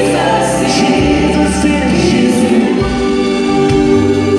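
Gospel choir singing a sustained passage with full harmony over instrumental accompaniment, deep bass notes changing every second or two, heard from the audience in a large church auditorium.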